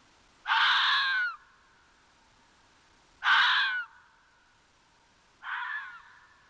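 Red fox giving three harsh, screaming calls a few seconds apart. The first is the longest and the last is quieter.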